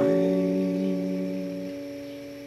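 Acoustic guitar chord strummed once and left to ring, fading away; its lowest note stops about 1.7 seconds in.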